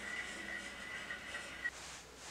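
Wood-cutting bandsaw running free after a cut, a faint steady whine that stops abruptly near the end.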